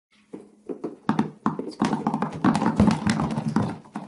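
Many small hard objects dropping and bouncing on a surface: a few separate knocks at first, building into a dense clatter, then thinning out near the end.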